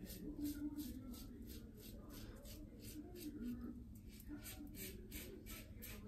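Karve Christopher Bradley safety razor, on its A plate with a Gillette Super Thin blade, scraping through neck stubble in short quick strokes, about three or four a second, faint, on an against-the-grain pass.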